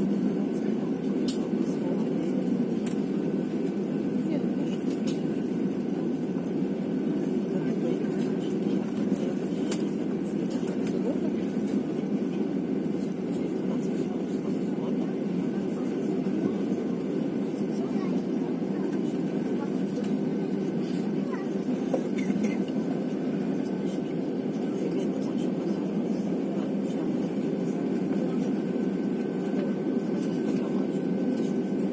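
Steady cabin drone of an Airbus A320-family jet taxiing, its engines at low taxi power with a faint steady whine. Indistinct voices in the cabin sit under the drone.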